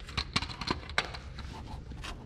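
Camera being handled and moved in under a tractor: a few short clicks and rustles, most in the first second, over a low steady hum.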